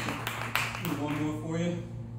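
Scattered hand claps from a small audience trailing off in the first half-second, followed by voices talking.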